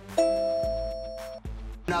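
A chime sound effect: one bright chord that rings steadily for just over a second, over a background music track.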